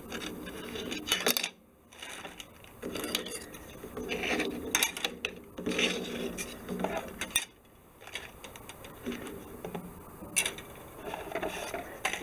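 Plastic model-kit sprues being handled and moved across a cutting mat: intermittent light clicks, clatters and rubbing as the parts trees knock together and slide.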